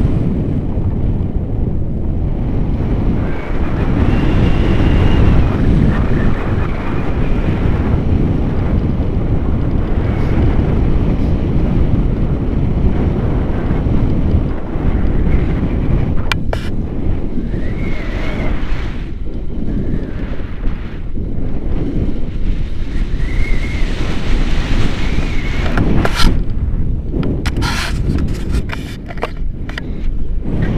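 Airflow buffeting the microphone of a pole-mounted camera on a paraglider in flight: a loud, steady wind rumble. A few sharp cracks come through it in the second half.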